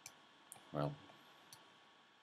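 Three sharp single clicks from a computer's pointing device: one at the start, one about half a second in and one about a second after that.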